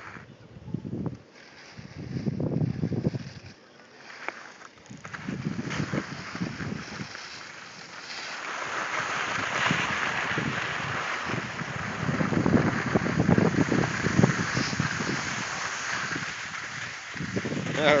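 Wind buffeting the microphone in uneven gusts, and from about halfway through a steady scraping hiss of movement over packed snow. A short laugh right at the end.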